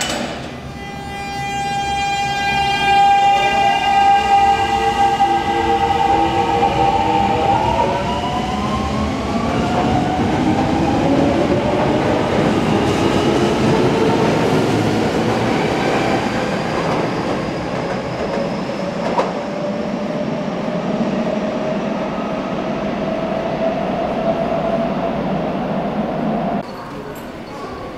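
Kobe Municipal Subway train with a Hitachi GTO-VVVF inverter pulling away from a standstill. The inverter gives a steady multi-toned whine for the first several seconds, then its tones climb in pitch as the train speeds up, over wheel and rail running noise.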